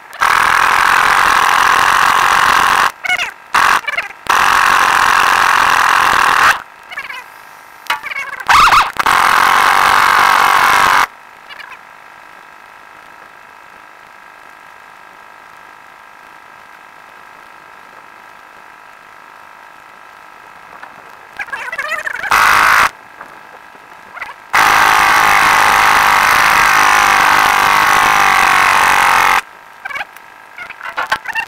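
Pneumatic impact wrench on a tractor's rear-wheel nuts, run in several bursts of a few seconds each while undoing them, with a long fainter pause in the middle.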